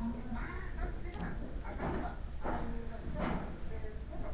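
Indistinct voices talking in the room, with a steady low hum underneath.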